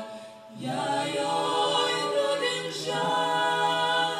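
Women's vocal ensemble singing a cappella in harmony, holding long chords, with a brief breath between phrases just under a second in.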